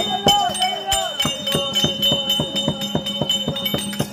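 Theatre accompaniment: a hand-played barrel drum beaten in a steady rhythm, about three strokes a second, over a held low drone and a metallic jingling ring. A voice trails off in the first second before the drumming settles in.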